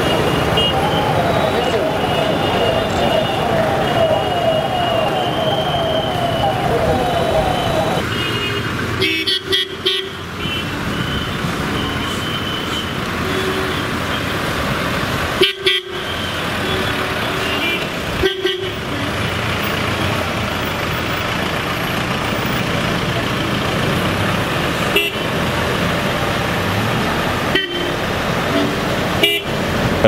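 Busy street ambience: vehicles running and several horns tooting, over indistinct chatter of a crowd. The sound breaks off briefly at a few edit cuts.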